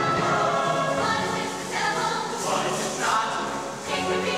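High school show choir singing together in a concert hall, the massed voices moving through a sung phrase with a short break just before the end.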